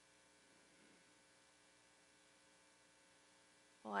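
Near silence: room tone with a faint steady electrical hum. A woman's voice starts just before the end.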